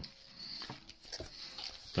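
Faint handling of a spiral-bound paperback book as it is closed and turned over to its front cover: soft paper and cover noises with a few light ticks.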